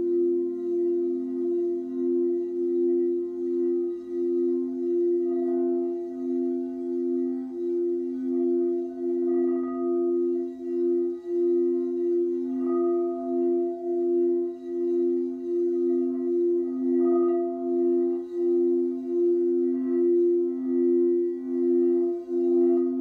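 Frosted quartz crystal singing bowls sung by a mallet rubbed around the rim: two steady tones, one low and one a little higher, sounding together and wavering in loudness. Faint higher tones swell and fade a few times.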